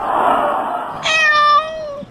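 A rushing burst of noise in the first second, then one drawn-out cat meow, held fairly level for about a second.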